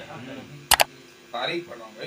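Quiet speech in a pause between recited lines, with two sharp clicks in quick succession a little before the middle.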